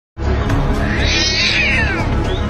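Music with a heavy bass beat, and over it a cat's drawn-out cry that slides down in pitch from about a second in.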